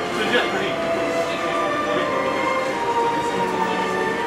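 Monorail train's electric drive whine, several tones drifting in pitch over the running noise of the car as it moves slowly through a station.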